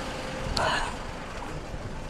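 Idling trucks: a low, steady engine rumble, with one short burst of higher noise about half a second in.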